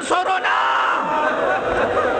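A congregation of mourners crying out together in grief, many voices overlapping in a sustained outcry in answer to the recited cry for help.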